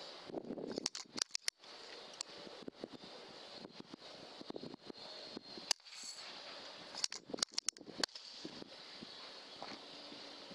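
A single air rifle shot, a sharp crack, a little over halfway through. Clusters of sharp clicks come about a second in and again about a second after the shot, over a steady faint hiss.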